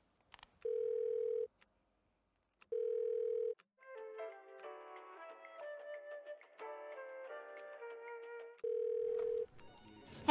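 Telephone ringing tone heard on the line: a steady tone sounding three times, about a second each. Between the second and third rings a short melody of clear notes plays.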